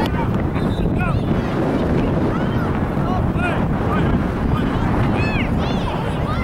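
Wind buffeting the microphone, a steady low rumble, with faint distant shouts from players and spectators.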